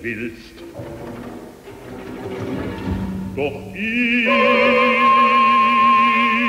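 Twentieth-century orchestral opera music: a sung note with vibrato ends just after the start, a quieter orchestral stretch follows, and about four seconds in a singer holds a long, loud note with wide vibrato over sustained orchestral notes.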